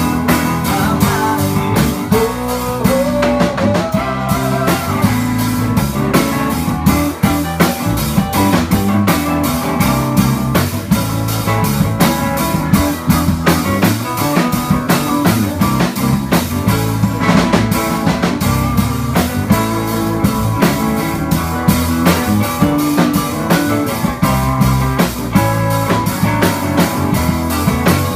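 Live blues band playing: electric guitar over a steady drum-kit beat with keyboard, a guitar note gliding upward a few seconds in.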